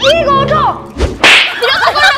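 A comic hit sound effect: a low thud about a second in, followed at once by a sharp whip-like swish. A child's voice shouts just before and just after it.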